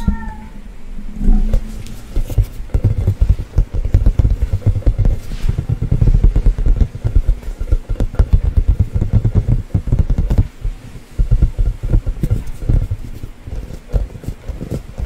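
Fingertips and nails tapping and rubbing quickly on an inflated rubber play ball held close to the microphone, a dense run of hollow thumps and taps with a few short pauses.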